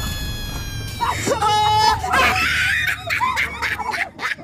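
High-pitched screaming: one long held scream that falls slightly in pitch, then a shorter, lower cry just after a second in, followed by rougher shrieking.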